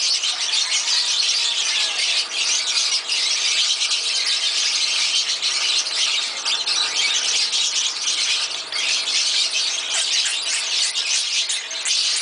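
Many caged birds chirping and squawking together in a dense, steady chatter.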